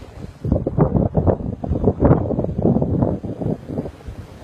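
Wind buffeting the microphone in uneven gusts, a loud, low rumble that surges and drops.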